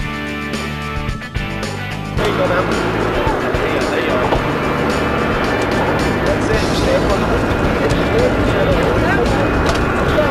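Background music for the first two seconds. Then comes a louder mix of on-deck noise and anglers' voices.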